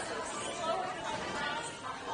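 Indistinct voices and chatter, with no clear words.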